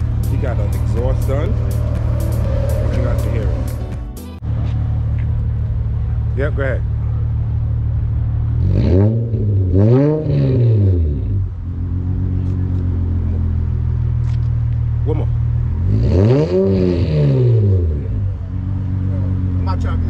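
Audi RS6 Avant's engine idling and revved twice, about nine and sixteen seconds in, each rev climbing and falling back to idle within about two seconds.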